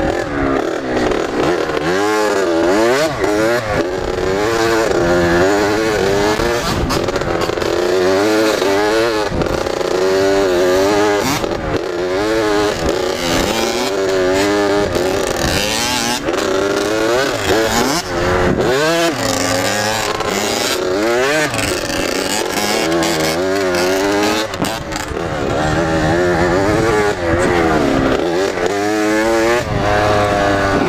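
Two-stroke Kawasaki KX80 dirt bike engine, 80 cc single cylinder, heard from the bike itself as it is ridden, its pitch repeatedly climbing as the throttle opens and dropping off between bursts, over and over.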